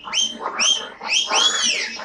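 A person whistling loudly: four short high whistles, each rising then falling in pitch, the last one longest.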